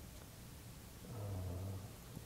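Quiet room tone, then about a second in a man's low, drawn-out hum of hesitation held at a steady pitch for nearly a second.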